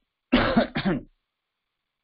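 A person clearing their throat with a cough, in two short loud bursts within the first second.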